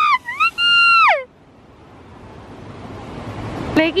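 A high-pitched voice squeals and falls away about a second in. A hiss from a fog machine jetting smoke then grows steadily louder, with a click and a word just before the end.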